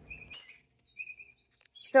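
A small bird chirping: two brief, high, thin whistled calls, one at the start and another about a second in.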